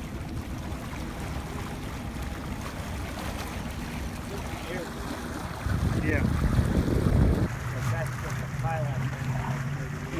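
Wind rushing over the microphone and water washing around a small boat on open sea, over a low steady hum. A stronger burst of wind noise comes about six seconds in and lasts about a second and a half.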